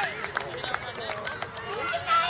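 Scattered voices calling out across an open field, with several short sharp clicks.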